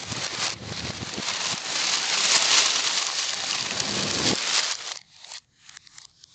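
Paper bags rustling and crinkling as chili peppers are shaken out of them onto a sofa. It is a dense, continuous rustle that is loudest midway and stops about five seconds in, followed by a few crinkles from the emptied bags.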